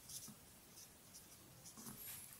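Faint scratching of a pen writing on paper on a clipboard, in a few short strokes.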